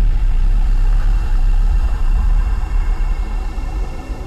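A deep, steady rumble with a few faint held high tones above it, trailing off at the end.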